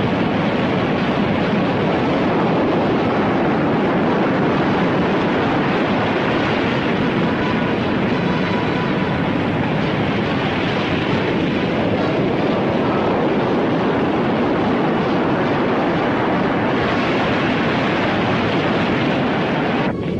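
A loud, steady rumbling noise with no clear rhythm, holding an even level throughout.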